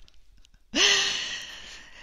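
A woman's breathy sigh close to a headset microphone: a brief voiced start about three quarters of a second in, then a long exhale that fades away.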